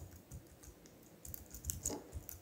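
Faint keystrokes on a computer keyboard: a scattering of soft, irregular clicks.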